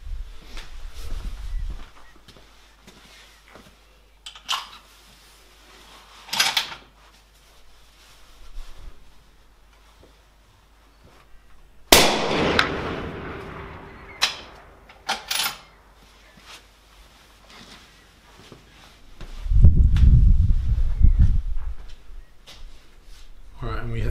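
A single shot from a short 15-inch-barrelled .284 Winchester rifle about twelve seconds in, a sharp crack with a short ringing tail. A few short clicks come before and after it, and a low rumble near the end.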